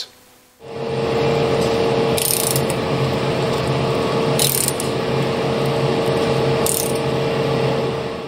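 Steady, dense mechanical clatter like ratchets and gears over a steady hum, starting about half a second in. A brief hiss comes about every two seconds.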